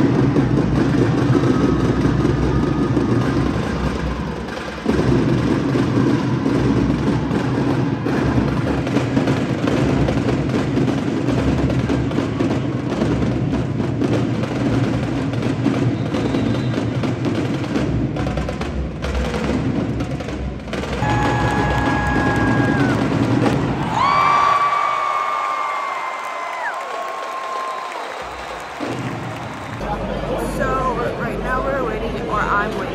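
Live band music with heavy drumming. Late on, the low drumming drops away and a few held, sliding high notes sound.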